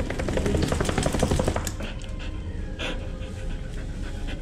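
Wet Cardigan Welsh corgi shaking itself off, with a dense flurry of flapping and spraying over the first second and a half, then panting.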